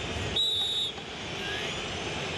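A referee's whistle gives one short steady blast about half a second in, signalling that the penalty kick may be taken. A stadium crowd's noise runs steadily underneath.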